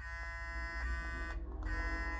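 Clarisonic Mia Prima facial brush with a foundation brush head, switched on and running: a steady, high electric buzz. Its upper tones drop out briefly partway through.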